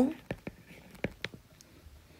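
A stylus tapping and scratching on a tablet's glass screen while handwriting, a string of short, light, irregular clicks.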